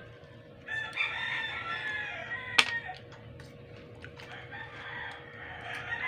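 Rooster crowing in the background: two long crows, the second fainter. A single sharp click comes between them.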